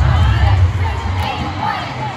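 A group of cheerleaders shouting and cheering together as a stunt is held up, over background music with a heavy low end that fades about halfway through.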